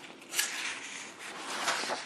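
Paper rustling as a page of an old printed service manual is turned by hand: a short swish about half a second in and a longer one near the end.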